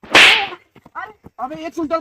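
A sudden, loud swish sound effect that fades out within about half a second, typical of a comic vanishing gag. Short bits of voice follow near the end.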